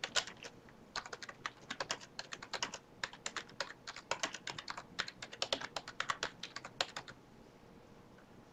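Typing a short sentence on a computer keyboard: a quick, uneven run of key clicks with a brief pause about a second in, stopping about a second before the end.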